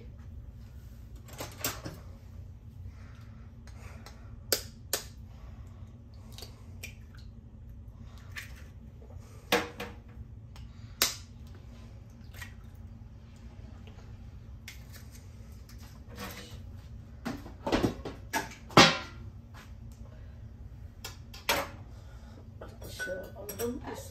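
Two eggs being cracked into a ceramic bowl with a kitchen knife: scattered sharp taps and clinks of the blade on the shells and the bowl, with the loudest knocks about three quarters of the way through.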